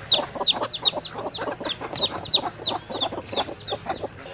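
A chick peeping over and over, about four to five high, falling peeps a second: the distress call of a chick cut off from its mother hens. Broody hens cluck low underneath it.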